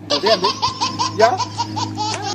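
High-pitched laughter: a fast, even run of short "ha" bursts, about seven a second.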